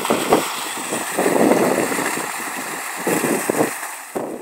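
Fountain jets pouring and splashing into the basin: a steady rush of falling water, swelling louder at times.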